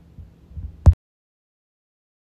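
A few low thumps, then a single sharp, loud click just under a second in, at which the sound track cuts off to dead silence.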